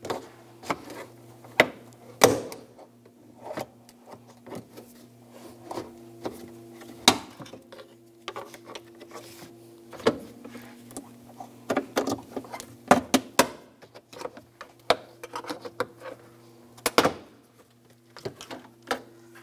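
Plastic trunk sill trim panel being pried up with a plastic trim tool: an irregular string of clicks, snaps and knocks as its clips pop loose and the panel is worked free. A faint steady low hum runs underneath.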